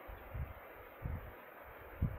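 Quiet room noise with two soft, low thumps about half a second and a second in, from the arm moving close to the microphone.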